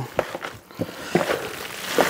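Wet squishing of ground pork and beef sausage mix kneaded by gloved hands in a plastic tub, with a few short squelches.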